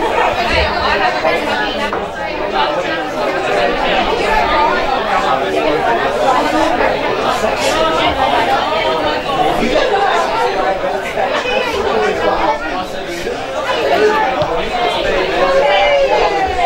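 Several people talking at once close by, an indistinct chatter of voices that never breaks into clear words.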